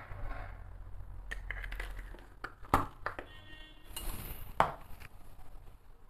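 A small metal spoon clinking against a ceramic bowl and container as vanilla is spooned into butter and icing sugar: a few sharp clinks, the two loudest about halfway and three quarters of the way in, amid soft handling noises.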